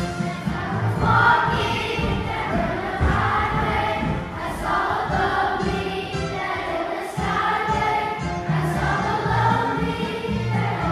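Large children's choir of fifth graders singing a song together.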